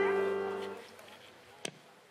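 A live band's final chord held and ringing out, with a wavering lead note on top, fading away within about a second. A single sharp click follows about a second and a half in.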